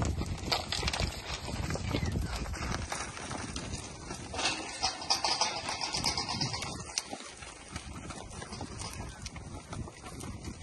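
Hooves of a herd of Brahman-type cattle shuffling and knocking on dry dirt and grass as they walk past, in many uneven steps, with a low rumble over the first three seconds.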